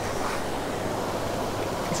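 Steady rushing noise of flowing creek water, with a low rumble underneath.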